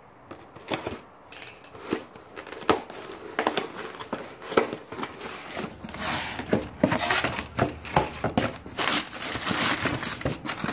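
Packaging crinkling and rustling as a cardboard parcel is unpacked by hand, with many irregular short crackles that come thicker and faster in the second half.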